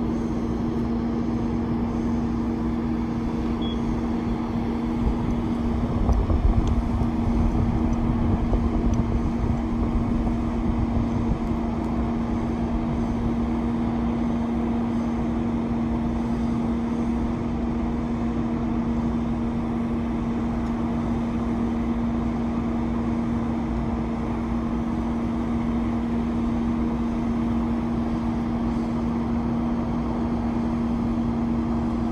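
Heavy vehicle engine running steadily, a constant drone with a fixed hum. A louder low rumble rises over it about six seconds in and fades within several seconds.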